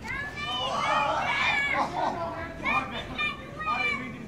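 Several high-pitched voices shrieking and yelling excitedly at once, in wordless bursts.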